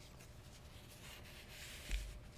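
Faint rustling of paper and clothing as hands move at the pulpit, growing a little in the second half and ending in a soft thump.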